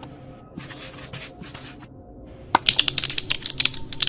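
A short burst of hiss, then a fast, irregular run of sharp clicks, like typing on a keyboard.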